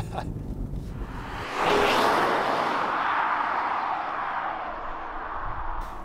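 Low rumble from the Genesis G80 Sport's 3.5-litre twin-turbo engine and road inside the cabin, then about a second and a half in a sudden rush of car noise. The rush fades slowly over the next four seconds, as of the car passing close and driving away.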